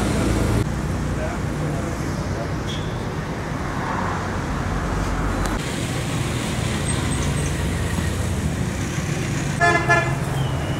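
Steady road traffic noise from passing vehicles, with a short vehicle horn blast near the end.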